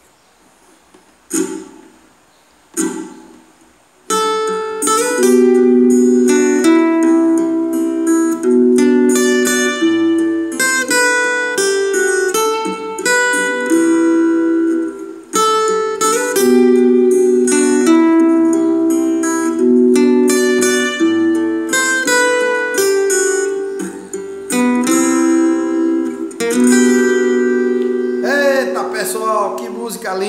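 Steel-string acoustic guitar played fingerstyle. Two short strums open it, then from about four seconds in a picked melody runs continuously over ringing chords, tapering off near the end.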